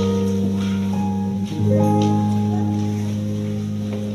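Closing instrumental chords of a choir anthem after the voices stop: sustained low chords on a keyboard instrument, changing once about one and a half seconds in and slowly fading.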